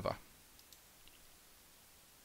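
A faint computer mouse click or two against near-silent room tone.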